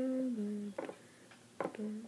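A person humming a short held note that slides down a little, then two light clicks as a plastic device case is handled, and a brief hum near the end.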